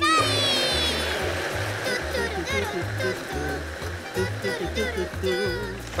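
Cartoon blender whirring at top speed, churning milk and banana; the noise starts loud and fades slowly. Background music with a repeating bass line plays over it.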